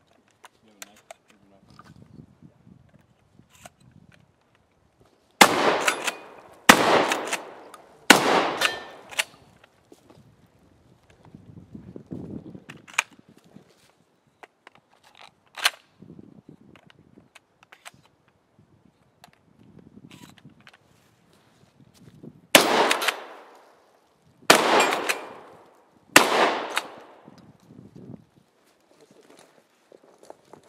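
Pump-action shotgun fired in two strings of three: three shots about a second and a half apart, then quieter clatter as shells are loaded one at a time from the side saddle, then three more shots about two seconds apart.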